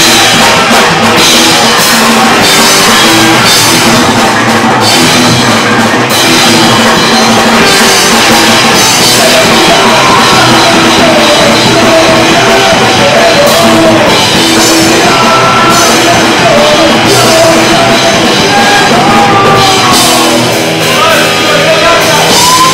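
Punk rock band playing live and very loud: electric guitars, bass and a drum kit with cymbals crashing, with vocals. A wavering pitched line, a lead guitar or voice, rides over the top in the second half.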